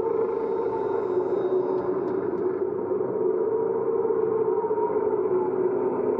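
A steady, unbroken low ambient drone, a dark sustained tone used as documentary underscore.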